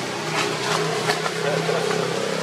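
Young macaque giving several short, high-pitched rising squeals in the first half, over a steady low hum.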